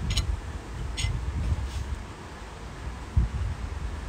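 Low rumble of wind on the microphone, with two faint light clicks about a second apart near the start, from a fork against the bowl as a croqueta is turned in beaten egg.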